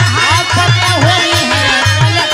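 Instrumental passage of Bhojpuri birha folk music: a melody that slides in pitch over sustained harmonium tones and a steady beat of low drum strokes.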